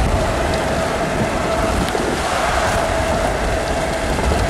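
Road and rain noise inside a moving car in a heavy storm: a steady wash of rain and tyre hiss on the wet road with low rumble, and a steady tone running under it.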